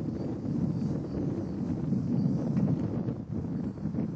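Gusty wind rumbling on the microphone, under the drone of radio-controlled model airplanes flying overhead.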